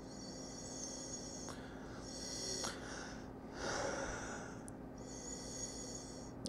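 A man sniffing wine in a glass held to his nose: about four soft, drawn-out sniffs and breaths, nosing the wine to judge its aroma.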